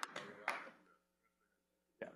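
The last few scattered claps of audience applause dying away within the first second, then near silence, broken by one short tap at the very end.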